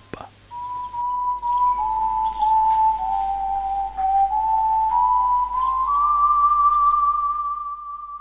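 A slow whistled melody of single held notes that step gradually lower, then climb back and hold a long, higher final note.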